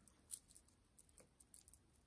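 A few faint clicks of faux pearl and glass beads and metal chain knocking together as a multi-strand necklace is handled; otherwise near silence.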